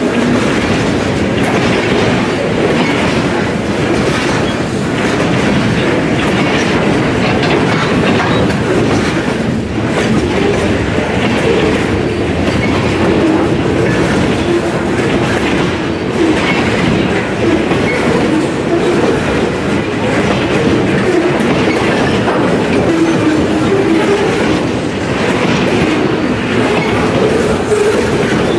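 Freight cars rolling past, centerbeam flatcars loaded with wrapped lumber and boxcars, their steel wheels clattering steadily over the rail joints. The sound holds at an even level throughout.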